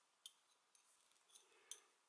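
Near silence, broken by three faint, short clicks as a metal crochet hook and yarn are handled.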